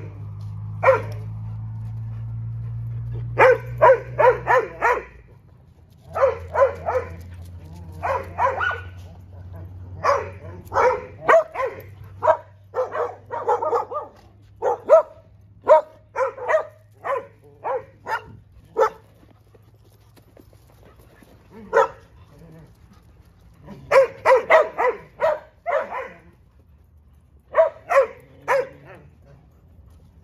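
Dogs barking in repeated bursts of several quick barks with short pauses between them. A low steady hum runs under the first half and fades out.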